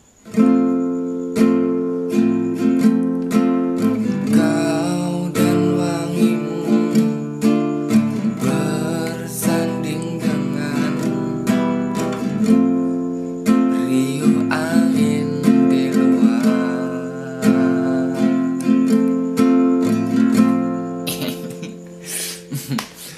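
Acoustic guitar strummed in a steady rhythm, starting about half a second in. It plays the chords D minor, E minor and F.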